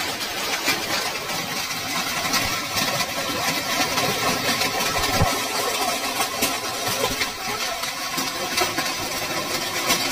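Heavy hail falling: a dense, steady clatter of hailstones striking the ground and roofs, with a constant patter of sharp ticks.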